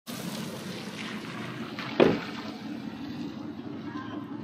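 Steady low outdoor rumble with one loud, sudden thump about two seconds in.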